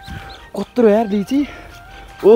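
A chicken calling: a few short, arched calls, the loudest about a second in.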